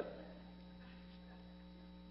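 Steady, faint electrical mains hum in the recording, with no other sound.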